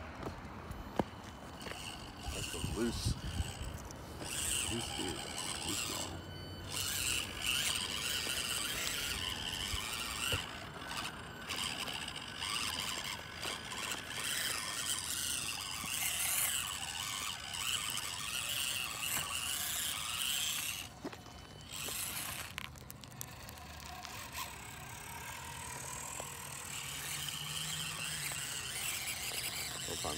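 Axial SCX24 micro crawlers' small electric motors and gear trains whining high as the trucks climb dirt, in spurts with a few short stops.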